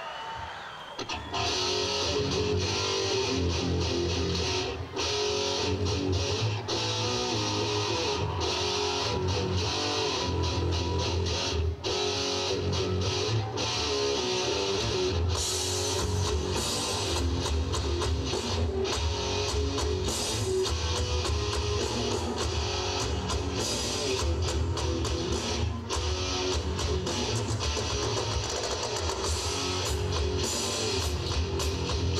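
Live heavy metal band starting a song about a second in, with distorted electric guitars, bass and drums played loud.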